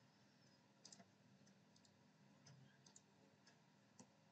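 Near silence with a few faint computer mouse clicks: a quick pair about a second in and a couple more near three seconds.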